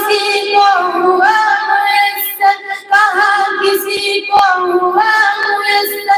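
A high voice singing an Urdu devotional song, a slow melodic line of long held notes with slight wavering, broken by short breaths between phrases.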